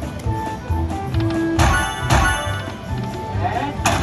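Jackpot Carnival Buffalo slot machine playing its free-games sounds: game music over a low beat, with three sharp, ringing strikes about one and a half, two and nearly four seconds in. The last strike comes as the on-screen mallet comes down.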